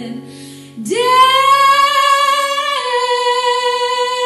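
A woman singing one long held note, scooping up into it about a second in and stepping down slightly in pitch near three seconds in, over acoustic guitar and mandolin.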